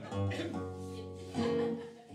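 Acoustic guitar played between sung lines, plucked and strummed chords that ring and fade, with a fresh stroke about one and a half seconds in.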